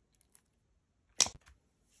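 Hands handling an open tub of thick slime: two faint ticks early, then one short, sharp click about a second in.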